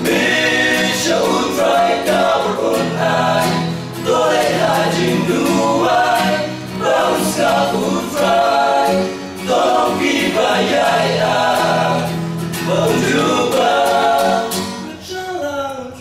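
Male vocal group singing a Khasi gospel song in harmony, with a steady low accompaniment under the voices. The last note fades away near the end.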